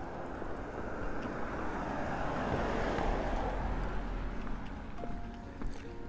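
A vehicle driving past on the street, its tyre and engine noise swelling to a peak about three seconds in and fading away.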